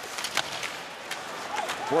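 Ice hockey game sound: a steady hum of arena crowd noise with a few sharp clacks of sticks and puck in the first half second.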